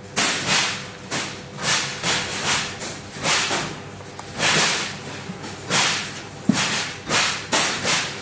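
A series of short swishing rubs, irregularly spaced at about one to two a second.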